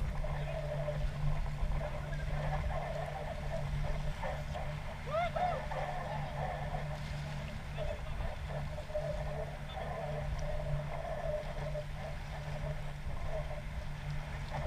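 Wind buffeting an outdoor microphone over a steady low drone, with faint distant voices.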